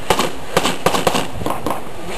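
Rapid gunfire heard from a distance, about eight or nine sharp cracks in quick, uneven succession.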